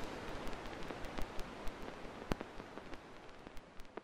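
Hiss with scattered crackling clicks, like old-record surface noise, steadily fading out at the very end of a song.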